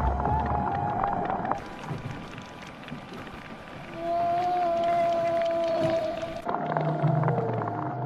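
Long, spooky whale calls picked up through an underwater recorder, presented as a Basilosaurus: drawn-out tones that waver slightly in pitch, the strongest call about halfway through. A music bed plays underneath.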